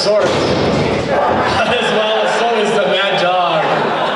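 A sharp slam at the very start, like a wrestler's body hitting the ring canvas, with a weaker knock about a second later, under men's voices talking.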